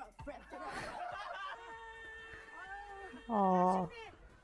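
A woman's voice and laughter from a TV clip, ending about three seconds in with a loud, held vocal cry that falls slightly in pitch.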